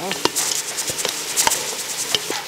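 Quail pieces sizzling in a metal pot while a wooden spatula stirs them, knocking and scraping against the pot in several irregular clicks.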